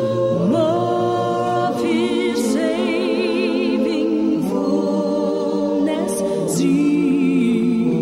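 A cappella choir singing held chords that move every second or two, with a female soloist on a microphone singing over them with vibrato.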